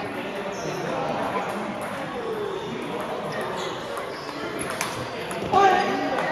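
Table tennis balls clicking on the table and rackets in a large hall, over a steady murmur of people talking. A short, loud voice cuts in near the end.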